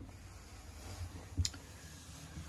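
Quiet room tone with one sharp click about one and a half seconds in.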